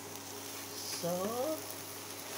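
Egg, sausage and tomato mixture frying faintly in a nonstick pan while a spatula stirs it, with a steady low hum underneath.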